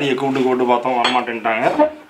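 Dinner plates and cutlery clinking at a laid table, under a person's voice.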